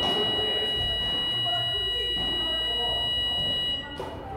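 Electronic buzzer sounding one steady, high, shrill tone for several seconds, then cutting off suddenly near the end.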